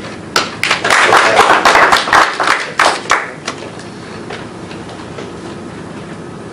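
Audience applause: a run of many hand claps that starts about half a second in, lasts about three seconds and dies away into low room noise.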